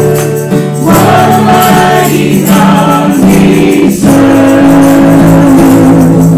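A worship song sung by several voices, led by two women at microphones, over a strummed acoustic guitar, with long held notes.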